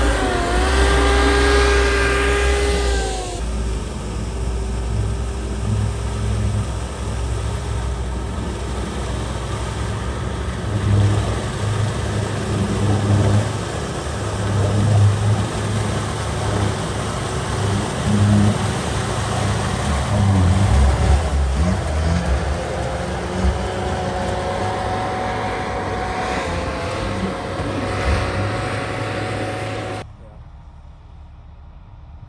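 Sherp amphibious off-road vehicles' diesel engines running under load and revving up and down. A whining engine tone dips and recovers about a second in, then comes back near the end.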